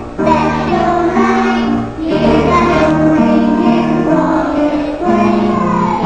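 A group of young children singing a song together in phrases, with held notes and brief breaks between lines.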